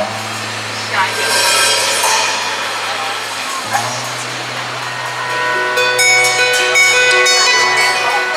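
Live band playing a quiet instrumental passage: a held low note that steps up in pitch a little under four seconds in, then from about six seconds in a run of plucked, ringing notes.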